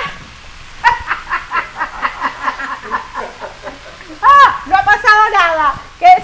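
A woman laughing: a long run of quick, repeated laughs starting about a second in, then a louder burst of laughing near the end.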